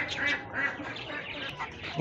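Chickens in a free-ranging flock giving short, faint clucks and calls.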